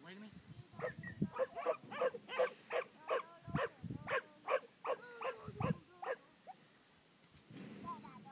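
A herding collie barking rapidly at cattle, about three sharp barks a second for some five seconds, then stopping.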